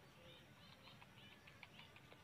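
Near silence: quiet outdoor ambience with a few faint, short bird chirps.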